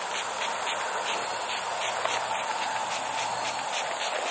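Scent-eliminator spray being sprayed onto a hunter's clothing: a steady hiss.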